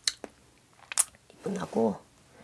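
A woman's mouth clicking sharply twice, about a second apart, then a murmured "hmm, hmm" and a breath out near the end.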